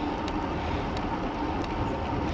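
Steady rush of wind over the microphone and road noise from a bicycle being ridden along at speed.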